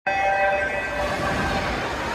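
Electronic swim-start horn sounding a steady tone as the race begins, dying away by about a second and a half in.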